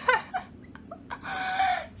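A woman laughing: a few short, breathy bursts, then a longer laugh that falls slightly in pitch near the end.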